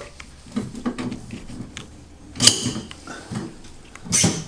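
Steel legs of a Mainstays 40-inch fold-in-half table being handled and set: a few light clicks and one sharp clack about two and a half seconds in, as a leg snaps into its locked position.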